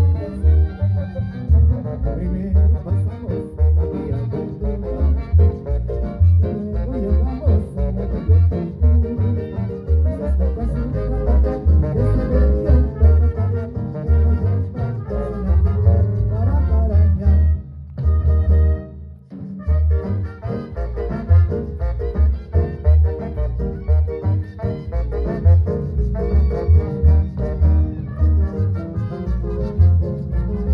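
Yucatecan jarana orchestra playing a jarana live, brass over a steady, driving beat of drums and bass. The music drops out briefly about eighteen seconds in and comes back about two seconds later.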